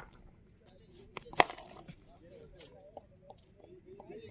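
A cricket bat striking the ball once with a sharp crack about a second and a half in, the shot that goes for four. Faint distant voices murmur underneath.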